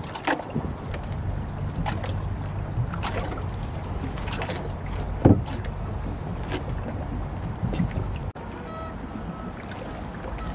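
Palette knife scraping and dabbing thick oil paint onto a canvas in short strokes over a steady low rumble, with one sharp knock about five seconds in. After a sudden drop in level near the end, a few faint steady tones sound.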